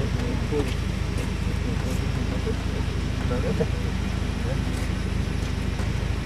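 A steady, low engine hum runs throughout, under faint, indistinct voices.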